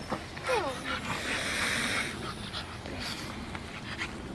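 A pug makes a short whine that falls in pitch about half a second in, then snuffles breathily for about a second.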